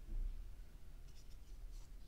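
Faint handling noise of a small plastic drone frame being turned over in the hands: a soft bump near the start, then light scraping and rubbing of fingers on the plastic.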